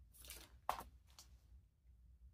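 Clear plastic sleeve holding a set of metal cutting dies crinkling as it is handled: a short rustle, then a sharp crackle, then a fainter one a moment later.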